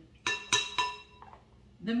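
A spoon clinking against a glass mixing bowl, three quick clinks in the first second, each ringing briefly, as whipped topping is scooped into the bowl.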